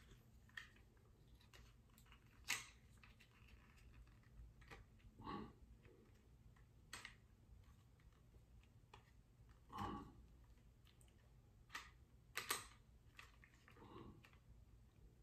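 Near silence broken by a handful of faint clicks and rubs of a plastic trail-camera housing being handled as a cable is worked through its door, the clearest about two and a half seconds in and a pair near the end.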